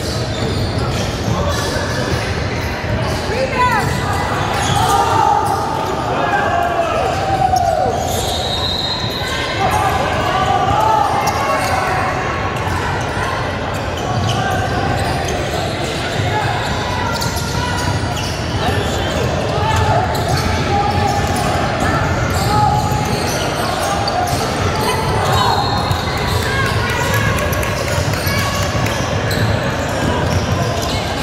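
Basketball dribbling on a hardwood court, with sneakers squeaking and indistinct voices of players and spectators echoing in a large gym.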